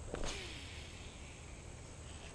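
A brief swish about a quarter second in as a baitcasting rod is swung through a cast. After it comes a steady low rumble of wind on the microphone.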